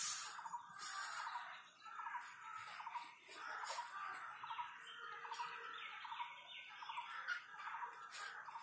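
Birds chirping and chattering, many short repeated calls overlapping, with a brief hissy rustle about a second in.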